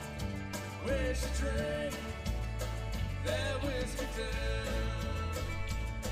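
Live country band with a bluegrass touch playing a song: drum kit, bass, acoustic and electric guitars and banjo, with a lead line of bending notes over the beat.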